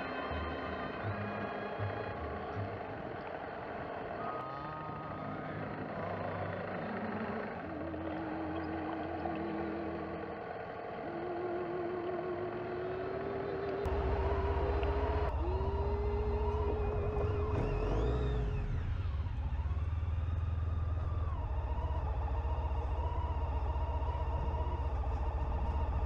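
Background music with long, wavering held notes. About halfway through, a loud low rumble comes in under it and keeps going.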